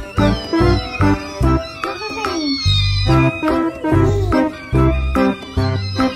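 Kittens mewing over background music with a steady beat.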